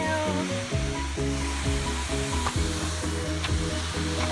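Background music of held chords that change every half second or so, over a steady hiss of rushing water from the falls.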